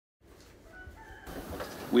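A rooster crowing faintly, cut off abruptly about a second in, followed by a low rising hiss of room noise.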